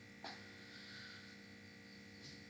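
Near silence: a faint, steady electrical hum made of several constant tones.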